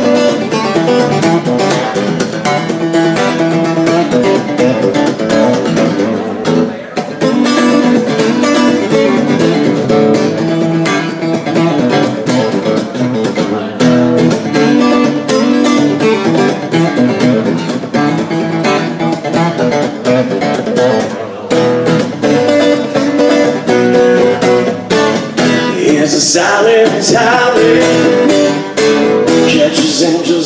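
Taylor 214 acoustic guitar played solo in an instrumental passage, strummed and picked continuously with only brief breaks in the rhythm.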